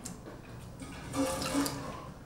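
A person slurping cold udon noodles and broth straight from the bowl, a wet sucking hiss that is loudest from about a second in.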